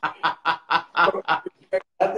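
A man laughing heartily: a quick run of laughs, about four a second, with one short last laugh near the end.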